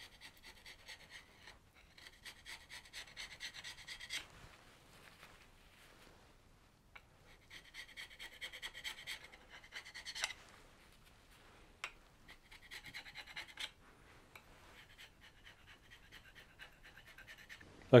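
Wood chisel scraping old head gasket residue off an engine block's deck face, cleaning it before a flatness check. It comes as four spells of quick, light strokes, the first two the longest.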